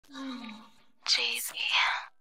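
A voice speaking a few short, indistinct, breathy words in three quick bursts, the last two louder.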